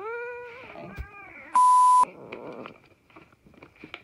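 A cat meowing: one long drawn-out meow, then a short second one. About a second and a half in, a loud steady electronic beep lasts half a second.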